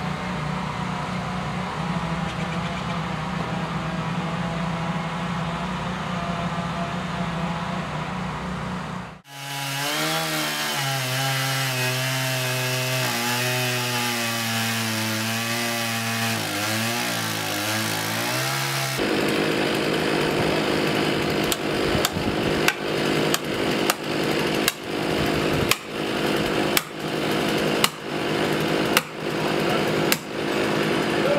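STIHL chainsaw engines running: first steadily, then, after a cut, idling with the revs rising and falling. In the last third comes the noise of sawing, then sharp blows about once a second: hammer strikes driving a felling wedge into the cut in the trunk.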